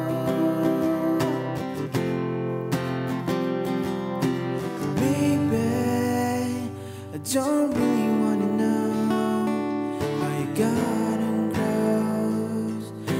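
Steel-string acoustic guitar strummed in a steady chord pattern, with a man's voice singing over it in places.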